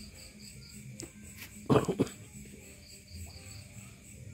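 Crickets chirping steadily, a high pulsing trill over a low background hum. A brief loud noise in two quick parts comes a little under two seconds in.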